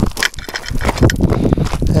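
Footsteps crunching on loose stones and gravel at a slow jog down a rocky trail: quick, irregular crunches and clatters of shifting stones, with a low rumble beneath.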